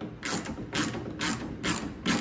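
Hand ratchet clicking in short rasping strokes, about two a second, as it drives a self-tapping screw into the tail light's plastic mounting.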